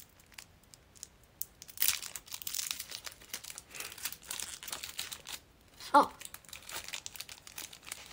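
A snack wrapper being torn open and crinkled by hand, in two spells of rustling.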